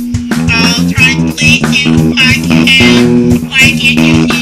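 Amateur indie emo rock song: electric guitar and bass guitar playing steadily.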